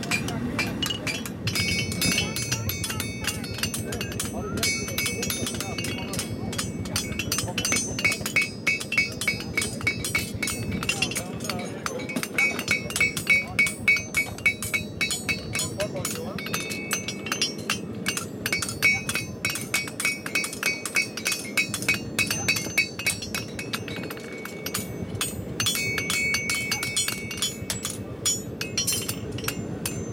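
Farriers hammering horseshoes on steel anvils: runs of quick, ringing metallic hammer blows, several anvils going at once, loudest and fastest from about twelve to sixteen seconds in.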